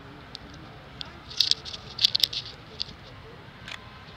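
Outdoor ambience on a football training pitch with faint distant voices, broken by two short flurries of sharp clicks, about a second and a half and two seconds in.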